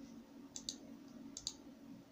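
Two computer mouse-button clicks about a second apart, each a quick double tick of press and release, over a faint steady low hum.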